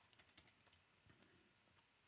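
Faint computer keyboard keystrokes: a quick run of taps in the first half second, then a few sparse single taps.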